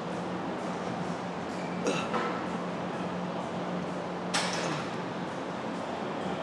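Plate-loaded chest press machine being worked through reps: a few short metal clinks and creaks from the machine and its weight plates, the loudest about four and a half seconds in.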